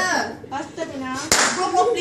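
People's voices and hand clapping around a birthday cake, with one sharp clap about a second and a half in, followed by louder noisy sound mixed with voices.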